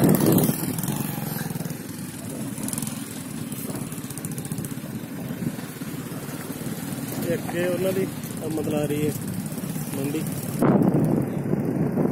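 Engine and road noise of a vehicle driving along a rough dirt road, a steady rumble, with a few brief words spoken about eight seconds in. Near the end the sound cuts to a louder rush of wind on the microphone.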